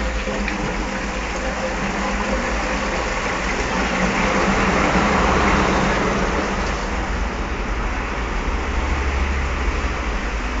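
Cistern flush of a Kimware squat toilet with a twisted pipe: a steady rush of water, swelling about four to six seconds in, then easing. The flush sounds less powerful than one through a straight pipe.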